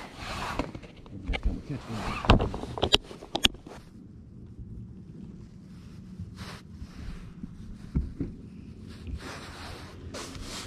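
A clear plastic tackle box of soft-plastic baits being handled, with rattling and three sharp plastic clicks in the first few seconds. Then it goes quieter, leaving a faint steady low hum.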